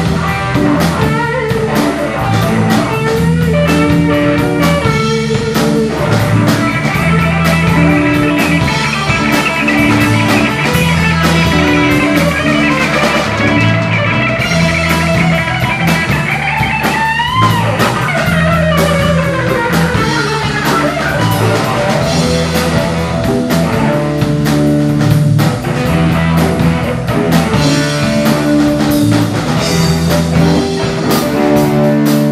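Live blues-rock band playing an instrumental passage: electric lead guitar lines over a repeating bass guitar riff and drum kit. About 17 seconds in, the lead guitar bends a note up and back down.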